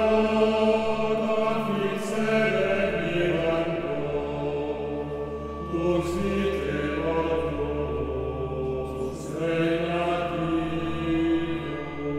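Male vocal ensemble singing slow, held chant-like chords together with a small string ensemble of violins and cello, over a steady low drone, in a cathedral's stone acoustic.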